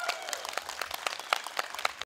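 Audience applauding at the end of a tune, many hands clapping irregularly. A last held pipe note dies away in the first moment.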